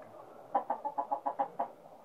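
A hen clucking: a quick run of about eight short clucks about half a second in, stopping shortly before the end.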